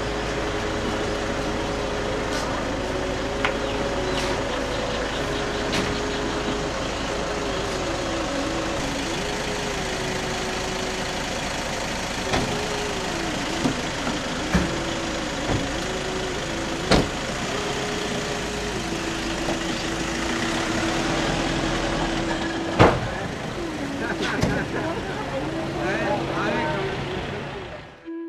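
Outdoor bustle of voices with a car engine idling, under a held, wavering tone, broken by several sharp knocks, the loudest near the end.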